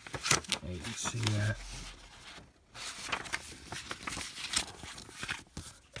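Paper rustling and crackling as a folded poster is handled, refolded and set down, in many short irregular strokes. A brief hum from a man's voice comes about a second in.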